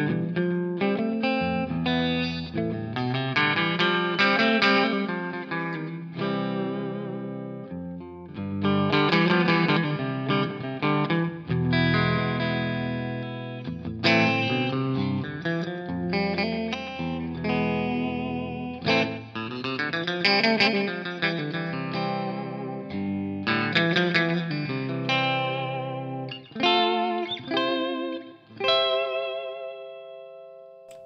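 Hallmark electric guitar with hot pickups, played through a Quilter amp: strummed chords and single-note lines, with the vibrato bar wavering the pitch. Near the end a ringing chord is shaken with the vibrato.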